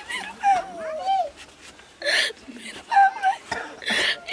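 A woman wailing and sobbing in grief: a long wavering cry that slides down in pitch, then a sharp gasping breath about halfway through, followed by short broken cries and another gasp near the end.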